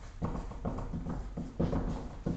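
Marker pen writing on a whiteboard: an irregular run of short scrapes and taps, about five or six in two seconds, as the letters go down.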